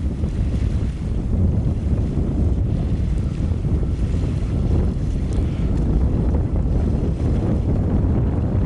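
Wind buffeting the microphone: a steady low rumble with no distinct events.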